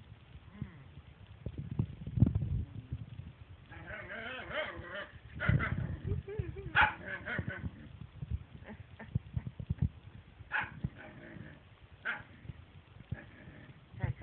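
A dog growling low, then several seconds of wavering, moaning 'talking' that rises and falls in pitch, then short scattered grunts. This is the grumbling of a dog jealous of the cat being petted.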